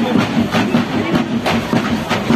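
Drumline of a drum-cheer routine playing a fast, steady beat, about four strokes a second.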